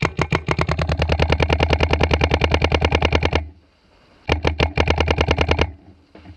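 Luxe 2.0 electronic paintball marker fed by a Rotor loader, firing paintballs in rapid strings of well over ten shots a second: one long burst of about three and a half seconds, a pause of about a second, then a shorter burst.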